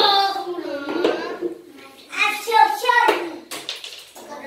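Children's voices calling out, high-pitched and drawn out, in two stretches: once at the start and again about two seconds in.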